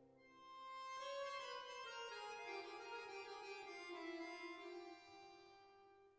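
Accordion-led chamber music: sustained, organ-like chords and a melody stepping downward, growing quieter near the end.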